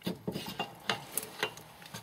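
Oiled steel differential center pin being slid by hand through the carrier and spider gears of a Ford 7.5 open differential: a run of light metallic clicks and rubbing, about half a dozen clicks spread irregularly.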